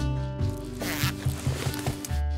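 Backpack zipper being pulled, a short scratchy burst about a second in, over background music.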